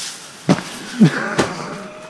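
Water hissing out of a garden hose nozzle, fading within the first half-second, followed by three sharp knocks about half a second apart and a brief vocal sound.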